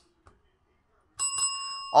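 A bell struck once just over a second in, its ring holding on steadily; it is rung to mark a big-hit card.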